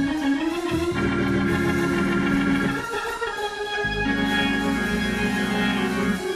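Organ playing long held chords, with brief breaks just after the start and about three seconds in.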